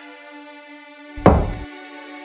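Slow background music with long held notes, broken a little over a second in by one heavy, sudden thud, an impact sound effect.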